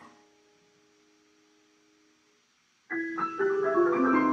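Solo piano: a held chord dies away over the first two seconds, then after a short hush a loud cluster of high notes is struck near the end and left ringing.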